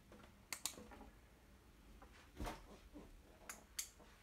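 A few faint, sharp clicks: two close together about half a second in, a duller thump about halfway, and two more clicks near the end.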